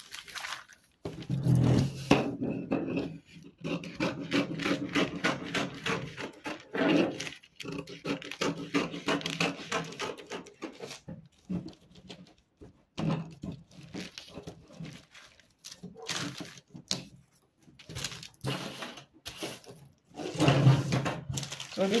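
Scissors cutting through stiff brown pattern paper: a run of short snips with the paper rustling and crackling as it is handled. Now and then a low, voice-like sound comes through.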